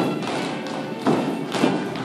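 Heeled character shoes stamping and stepping on a studio floor in a group folk-style dance, a few heavy footfalls over music.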